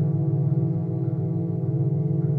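Several metal singing bowls ringing together in a sustained, layered drone of many overlapping tones, with a fast, even wobble in the lowest notes and no fresh strikes.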